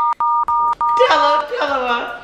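A steady two-tone censor bleep, broken into four short pieces over about a second and a half, covering spoken words; excited women's voices follow.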